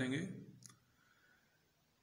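A man's voice finishing a word, then a single faint short click and a pause of near silence.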